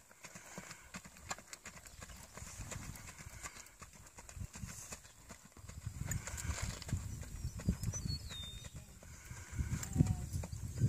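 Hoofbeats of a ridden Rocky Mountain Horse mare moving at a gait on grass and dirt, a steady run of soft thuds that grows louder in the second half.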